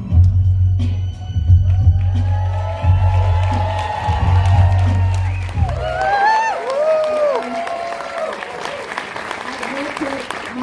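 Low, rumbling film music playing through a theatre's sound system, cut off suddenly about six seconds in. An audience applauding and cheering follows, with a few whoops.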